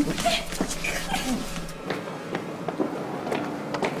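Raised voices and scuffling during an arrest, over background music that stops about two seconds in. After that, footsteps at about two a second.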